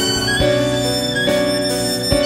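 Violin playing a sustained melody over piano accompaniment, changing note about every half second.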